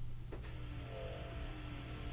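A quiet pause in a phone-in radio conversation: a faint steady low hum, with a faint drawn-out tone running through the middle.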